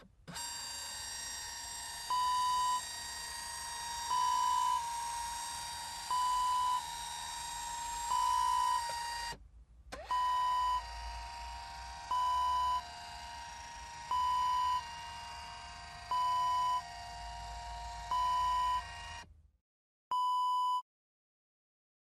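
Electronic beeps, one about every two seconds, each lasting under a second, over a steady electronic drone with a high hiss. The drone cuts out briefly about nine seconds in and stops near the end, leaving one last beep on its own.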